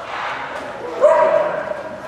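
An agility dog barks once, a single drawn-out bark about a second in, while running the course.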